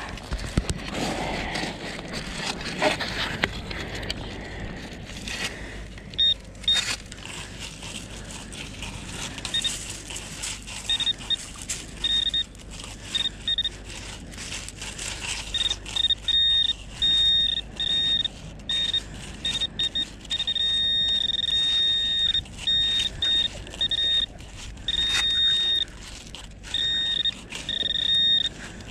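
Handheld metal-detecting pinpointer beeping with a high, on-off tone from about six seconds in: short chirps at first, then longer, nearly continuous tones as the probe is swept through loose shingle and sand spoil, the sign of a metal target close to its tip. Before it, gravelly crunching and scraping of shingle being dug and moved.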